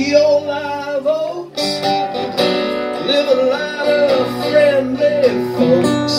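Two acoustic guitars playing a slow folk-country song together, with a bending melody line over the chords; the sound dips briefly about a second and a half in.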